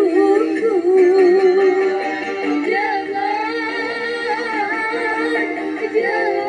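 A woman sings a dangdut song live into a microphone with a band of keyboard and guitar. The vocal line is continuous and heavily ornamented, with wavering, bending notes.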